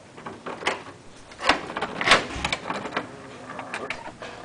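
A string of sharp clicks and knocks from a hotel room door and its latch as the door is opened, loudest about one and a half and two seconds in.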